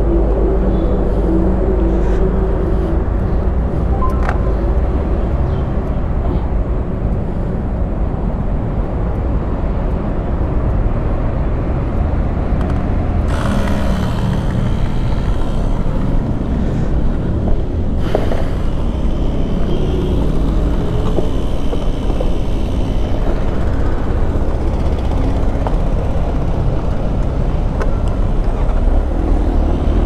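A steady, low machine hum with no pauses. An added hiss joins it from about 13 to 18 seconds in.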